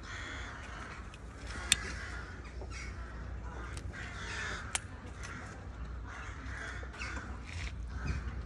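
Birds calling on and off over a low steady rumble, with two sharp clicks, about two and five seconds in.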